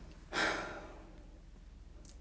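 A person's single sigh: one breathy exhale about half a second long, starting about a third of a second in and fading out.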